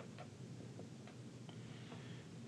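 A pen writing on paper: a few faint, light ticks and scratches as the letters are stroked out, over a low steady room hum.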